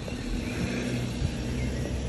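A road vehicle's engine running close by, a steady low hum.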